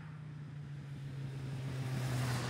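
Motorcycle engine running at a steady note as the bike approaches, growing louder as it nears.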